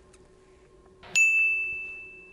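A single bright ding sound effect about a second in: one clear high tone that rings and fades away over about a second and a half, marking the change to the next item's title card. Before it there is only a faint low hum.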